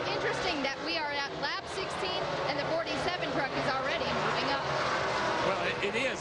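A commentator's voice over the steady drone of a pack of NASCAR race trucks' V8 engines running at speed.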